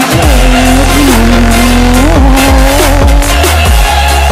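Electronic bass music with a drift car's engine and tyres mixed in: the engine revs rise and fall a few times as the car slides, with tyre squeal over a heavy bass line.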